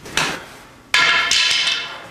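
A wooden stick knocking once, then about a second in striking the hard floor with a louder ringing clatter that fades out.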